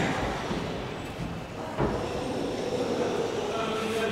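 Dull knocks of the Avro Lancaster's metal tailplane being shifted against the rear fuselage frame: one at the start and another about two seconds in, over a steady low background noise.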